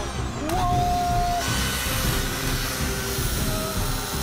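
Oregon electric chainsaw running steadily, its chain cutting into a car's fabric soft-top roof.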